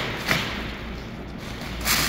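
Thin plastic protective cover rustling and crinkling as it is pulled off a new car's hood and bunched up, with a short louder rustle about a third of a second in and another near the end.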